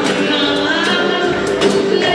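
Live acoustic band music: a woman singing lead with backing voices, over acoustic guitars, djembe hand drums and tambourine, with scattered drum and tambourine strikes.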